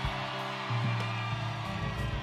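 Live rock band playing an instrumental passage: steady held bass notes that shift about two-thirds of a second in, under sustained guitar tones.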